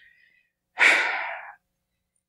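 One loud breath drawn close to a handheld microphone about a second in, starting sharply and fading away within a second.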